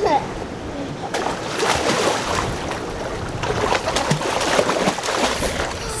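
Water splashing in a small swimming pool as a child swims and kicks, an uneven run of splashes.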